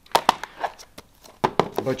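Plastic Blu-ray cases clacking against each other and the table as they are picked up and put together: two sharp clicks right at the start, a lighter one just after, and another clack about a second and a half in.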